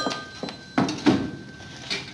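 A telephone bell's ring fades out, then a few knocks and clatter as a corded phone's handset is lifted off its cradle and handled.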